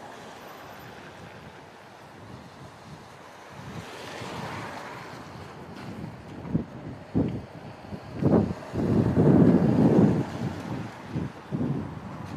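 Wind buffeting an outdoor microphone in irregular gusts. It is steady and low at first, then comes in loud rumbling blasts through the second half, loudest a little past the middle.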